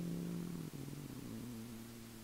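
A low, steady pitched hum that steps in pitch a couple of times while fading out, with a faint click about two-thirds of a second in.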